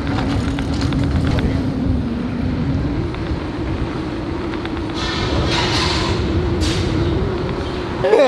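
Electric scooter's hub motor whining with a steady tone that rises a little in pitch about three seconds in as it picks up speed, over wind rumbling on the microphone. A couple of brief hissy gusts come past the middle.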